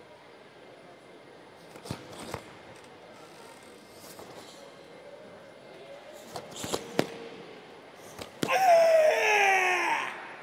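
Sharp snaps of a karate gi and feet on the mat as fast kata techniques are thrown, a few at a time, then near the end a loud kiai shout from the athlete, falling in pitch over about a second and a half.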